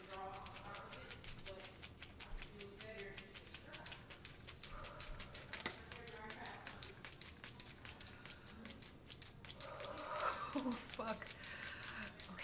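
Rapid, regular flaps of air as a face is fanned by hand to ease the burning of a glycolic acid peel, with faint murmuring and a few quiet vocal sounds, louder about ten seconds in.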